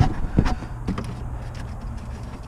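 Two light knocks as a hand moves a hose or wiring loom in an engine bay, over a steady low hum.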